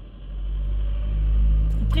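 Low vehicle engine rumble that swells quickly about a quarter of a second in, then holds steady and loud.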